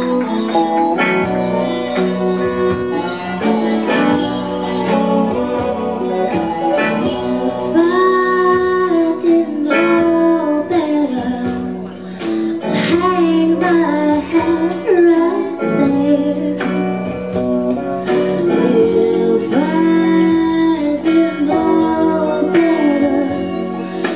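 Live country band playing a slow song: electric guitars over drums and upright bass, with a woman singing.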